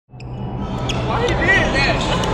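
Basketball gym sounds fading in: a ball bouncing with a few short squeaks near the end, over background voices.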